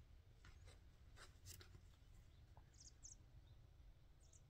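Near silence with a few faint rustles as yarn skeins and their paper tag are handled.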